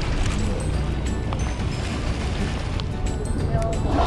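Steady low hum of a whale-watching boat's engine running slowly.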